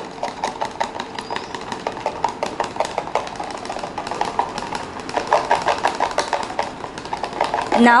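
A metal fork beating food dye into oil in a plastic cup, its tines clicking rapidly against the cup's wall, several clicks a second.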